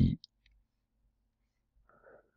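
Near silence after a spoken word ends, broken by two faint, short clicks within the first half-second and a faint breath near the end.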